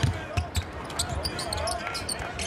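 Basketball dribbled on a hardwood court, several bounces, with players' voices calling out on the floor.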